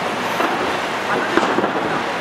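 Steady rushing of wind and street traffic heard from the open top deck of a moving sightseeing bus.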